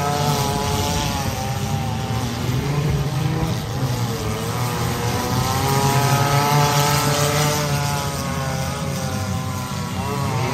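Several figure-8 race cars' engines running together, their pitch rising and falling repeatedly as the cars accelerate and back off around the track, loudest a little past the middle.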